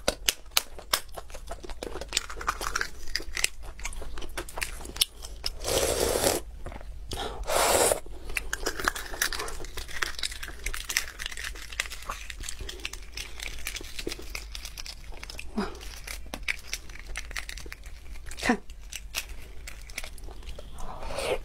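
Eggshell crackling and cracking as a marinated egg is peeled by hand, in a dense run of small clicks. There are two louder tearing, rustling bursts about six and eight seconds in.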